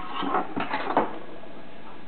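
A katana blade is handled and set down on a wooden tabletop: brief scraping and rubbing, then a single knock about a second in.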